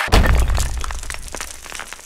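Outro sound effect: a sudden deep impact hit with crackling on top, fading away over about two seconds.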